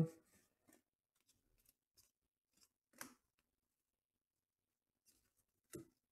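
Mostly near silence, broken by a few faint, brief rustles and flicks of trading cards being handled and slid through a stack, the loudest about three seconds in and another just before the end.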